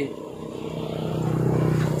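A motor vehicle's engine hum, growing steadily louder as it approaches.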